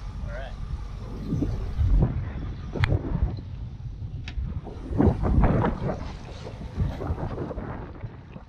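Wind buffeting the microphone over the rush of water along the hull of a sailboat under way, in uneven gusts, with the loudest surge about five seconds in.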